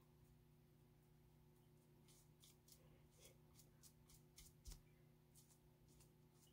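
Near silence with a faint steady hum. From about two seconds in come faint, quick strokes of a foam brush spreading paint on a wooden block, about three a second, with one soft knock near the end.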